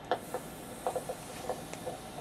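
Handheld vascular Doppler's speaker giving a soft hiss with about eight faint, scattered clicks as the probe is eased off the arm.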